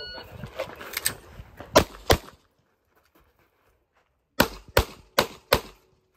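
An electronic shot timer gives a short start beep, then a competition pistol fires: three shots between one and two seconds in, a pause of about two seconds, then four quick shots near the end.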